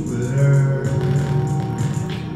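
Instrumental backing music of a song playing, with sustained chords and a steady beat.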